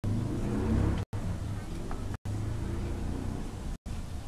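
A low, muffled voice over a steady low hum. The audio cuts out completely for a split second several times.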